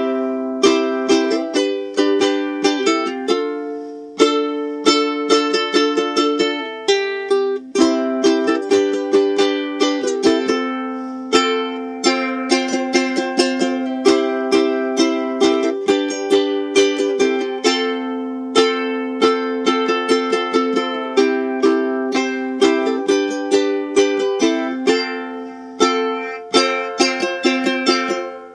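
Ukulele strummed steadily through a C, G and F chord progression, the chord changing every few seconds. The F is played as an alternative voicing with an extra C note on the top string at the third fret, which makes the chord ring out a little more.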